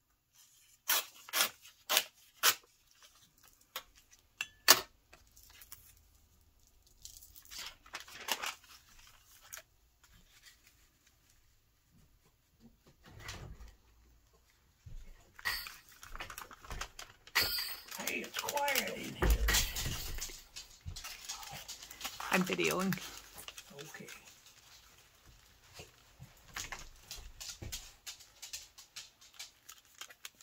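Paper being handled at a craft table: a few sharp clicks and a tear of paper along a ruler edge in the first few seconds, then rustling and folding of paper envelopes, loudest in the middle, with a brief murmur of a voice among it.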